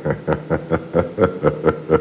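A man laughing in a run of short, evenly spaced 'ha' bursts, about four or five a second.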